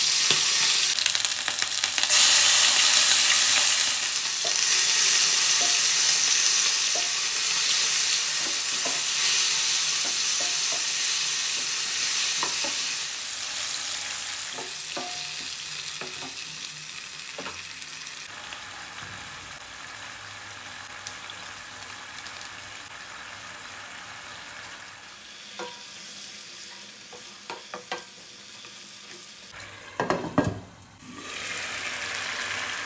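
Chicken pieces sizzling in hot oil in a nonstick wok, with a spatula scraping and clicking against the pan now and then. After about thirteen seconds the sizzle fades to a much quieter, steadier sound once the red chili-tomato sambal is in the pan.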